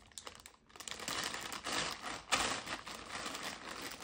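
Clear plastic zip-seal vacuum storage bag crinkling and rustling as it is pulled open and the compressed fabric inside is handled. Near quiet with a few small clicks at first, then dense crinkling from about a second in, loudest a little past the middle.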